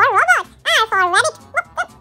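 High-pitched, cartoon-like singing voice in short syllables, the pitch swooping up and down on each one, as part of a children's alphabet song.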